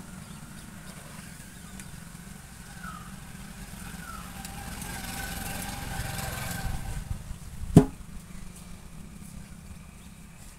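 A motor vehicle's engine running in the background, swelling about halfway through and then easing off, with one sharp knock near the end.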